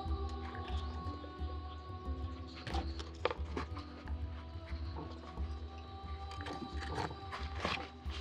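Gentle instrumental background music with sustained notes, over scattered small clicks and taps from hands wiring a small potted conifer with thin copper wire.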